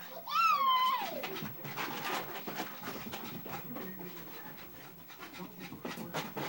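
A short, high, falling cry in the first second, then a Boston terrier panting quickly and irregularly.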